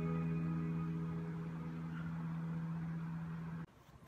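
An electric guitar note ringing out and slowly fading, then cut off suddenly shortly before the end.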